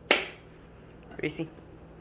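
One sharp snap, the loudest thing here, with a short ring after it about a tenth of a second in, made to get a dog's attention; a man then says the dog's name, "Reese."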